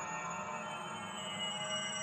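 Electronic music: a dense layer of sustained, steady tones, with a new high tone coming in near the end.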